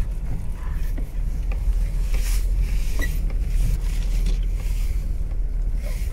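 The 2.8-litre four-cylinder turbodiesel of a Mitsubishi Pajero pulling through deep snow, heard from inside the cab as a steady low drone, with a few brief rushing noises over it.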